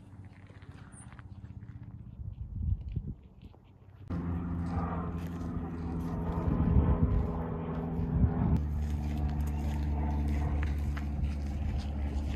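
Small propeller airplane's engine droning overhead, a steady hum that comes in suddenly about four seconds in after a quieter start, its tone shifting slightly about two-thirds through.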